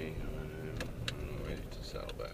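Car engine and road noise heard from inside the cabin as the car turns out onto a street, with a few sharp clicks about a second in.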